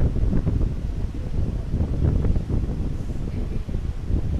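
Steady low rumble of wind-like noise on the microphone, with no speech.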